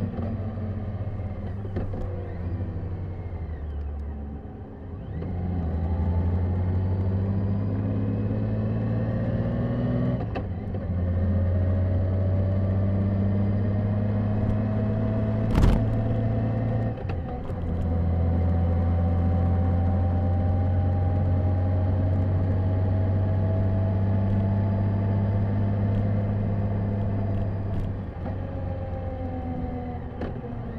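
Honda GL1800 Goldwing's flat-six engine running under way, heard from the rider's helmet; the engine note climbs slowly under throttle and drops back briefly a few times. A single sharp click about halfway through.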